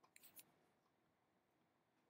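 Near silence: room tone, with a few faint clicks from computer mouse or keyboard use in the first half second.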